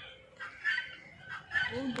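Guineafowl giving a few short, harsh calls, repeated about every half second. A person's voice murmurs briefly at the very end.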